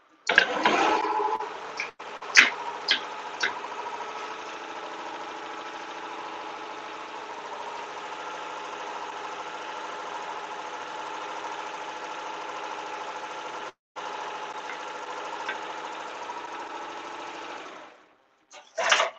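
Tajima multi-needle commercial embroidery machine stitching a design, a steady rapid mechanical run with a few sharp clicks in the first few seconds. The sound drops out for a moment about 14 seconds in.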